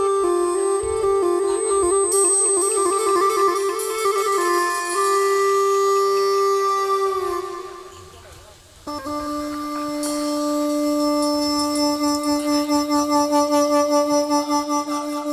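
Bamboo flute playing a slow chầu văn melody of long held notes. The sound fades away about eight seconds in, then comes back on a lower held note that pulses in loudness near the end.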